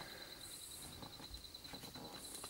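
Faint steady high-pitched trilling of crickets at night, with a brief higher buzz about half a second in.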